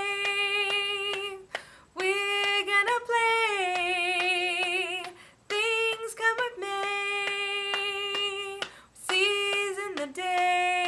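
A woman singing unaccompanied, in sung lines of about three seconds each with long held notes and short breaths between them; some held notes carry a vibrato.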